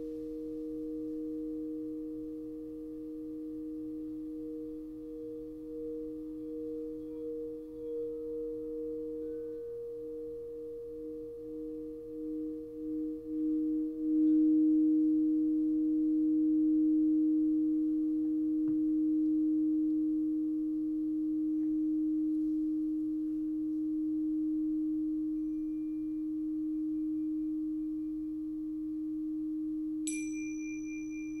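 Two crystal singing bowls ringing together in pure, sustained tones, one lower and one higher. Each wavers in a slow pulse for a few seconds, and the lower bowl then swells louder about halfway through and rings on steadily.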